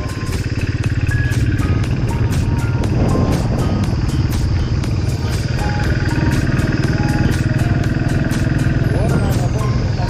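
Motorcycle engine running steadily at cruising speed with wind noise, under background music that plays a simple melody. A long falling swoop sounds near the end.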